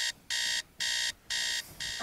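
Digital alarm beeping: a bright electronic beep repeating about twice a second, four times.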